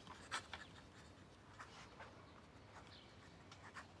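Faint scratching of a pen writing on paper, in short irregular strokes.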